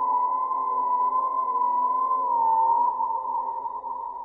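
Sustained electronic drone: a high, slightly wavering tone held over several lower steady tones, the high tone dipping and recovering about two and a half seconds in.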